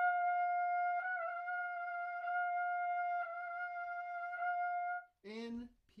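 A trumpet holds a single steady G on top of the staff for about five seconds. Four times the valves are switched to the G-sharp fingering and the note wavers briefly but stays on the G: an exercise that tests control of the airstream in the upper register.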